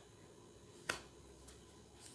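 A single short, sharp click about a second in as a tarot card is put down on the tabletop, in an otherwise quiet room.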